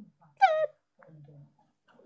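A single short meow, high and falling in pitch, about half a second in.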